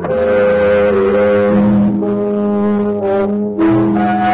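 Instrumental music of held chords in a low register, the notes changing about once a second, with a brief break about three and a half seconds in.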